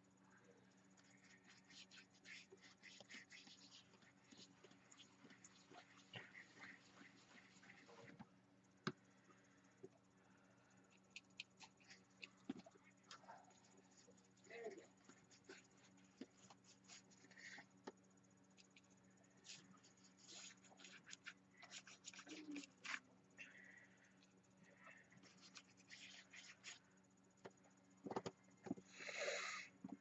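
Near silence: faint, scattered rubbing and tapping of hands working gel crayon on an art journal page, over a low steady hum.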